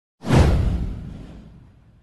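A single whoosh sound effect with a deep low boom under it, swelling in suddenly about a quarter second in and fading away over the next second and a half.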